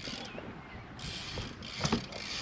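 BMX bike coasting on concrete, tyres rolling and the rear hub ticking as it freewheels, with a sharp knock near the end as the bike hops up onto a box ledge.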